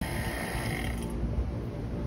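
Electric HVAC vacuum pump running, then switched off about a second in as the evacuation ends at 295 microns; its high-pitched running noise dies away, leaving a low rumble.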